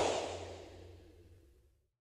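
The final hit of a rock-style TV intro theme, with a whoosh effect, ringing out and fading away over about a second and a half. A low note lingers longest.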